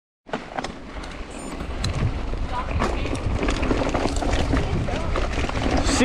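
Mountain bike rolling over a dirt and gravel trail: wind rumbling on the microphone, tyre crunch and scattered sharp clicks and rattles from the bike. It grows louder over the first two seconds as speed builds.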